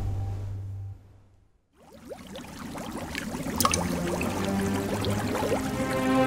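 Logo-sting sound design: a low drone fades out and a moment of silence follows. Then a water sound effect of many quick drips and bubbles builds up, with a sharp click about three and a half seconds in and sustained musical notes entering in the last couple of seconds.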